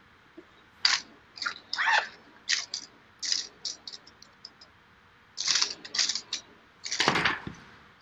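Ballpoint pen scratching across sketchbook paper in many short, quick, irregular strokes.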